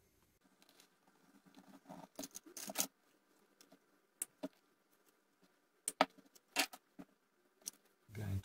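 Small clicks, scrapes and snips of copper appliance wire being stripped and handled with side cutters: a cluster of light scraping clicks about two to three seconds in, then a few single sharp clicks.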